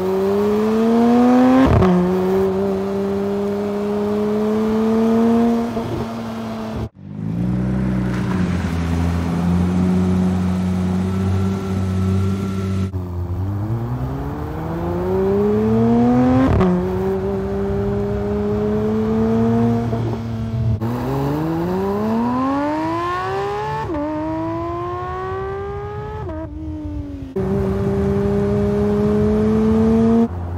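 Porsche 911 GT3 (992) naturally aspirated 4.0-litre flat-six accelerating hard, its pitch climbing and then dropping sharply at each upshift, several times over. About seven seconds in, the sound briefly cuts out and then holds steadier and lower for a few seconds before the climbs resume.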